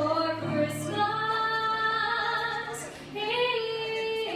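A young woman singing a solo melody into a handheld microphone, in long held notes over a steady low accompaniment note. She pauses briefly about three seconds in, then starts the next phrase.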